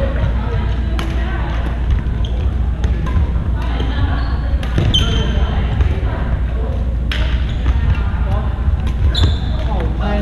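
Badminton rally: rackets striking the shuttlecock in sharp cracks a couple of seconds apart, with shoes squeaking briefly on the hardwood floor, over a steady hum and background voices in the hall.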